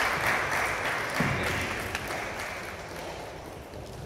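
A small group applauding, the clapping loudest at first and dying away gradually.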